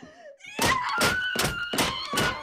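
A short laugh, then from about half a second in a rapid run of heavy thuds, about four a second, under a held high wailing tone.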